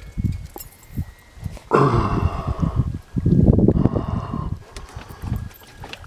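A man's heavy, excited breathing: two long, loud, voiced exhales, each about a second long, in the middle of the stretch, with fainter breaths around them.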